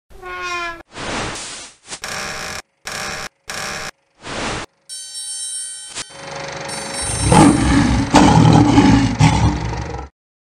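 Sound-effect sting for a cinema logo intro. It opens with a short pitched call, then five separate bursts of noise with silences between them, a ringing set of steady tones, and a dense, louder passage that starts about seven seconds in and cuts off suddenly at the end.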